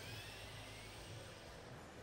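Faint whine of a competition robot's electric drive motors, rising in pitch over about a second and a half as it speeds up, over a steady low arena hum.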